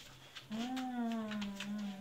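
A woman's long hummed 'mmm', steady and low, starting about half a second in. Light clicks of handling sound over it.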